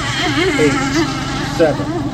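Gasoline engines of 1/6-scale radio-controlled unlimited hydroplanes running on the water, their pitch wavering up and down as the boats circle before the start.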